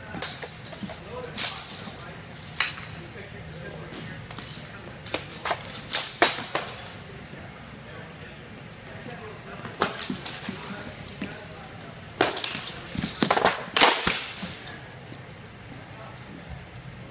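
Sparring weapons clashing: a flail and a sword striking shields and each other, sharp clacks and clinks in several quick flurries, with dense exchanges in the middle and again near the end.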